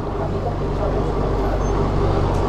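Steady low rumble with a hum, slowly growing a little louder.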